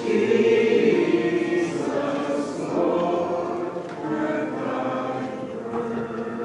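A choir singing a sacred song together, a new phrase starting right at the beginning after a short pause for breath.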